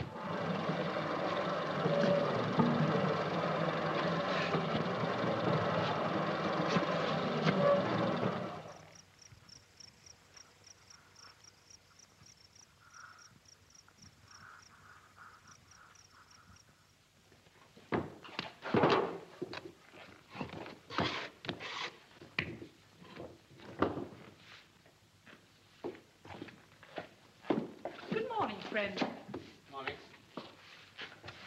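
A bakery dough mixer runs loudly, its hooks churning dough in a metal bowl, and it cuts off after about nine seconds. Faint, rapid bird chirps follow. Then comes a run of irregular knocks and slaps as dough is cut and kneaded by hand on a table.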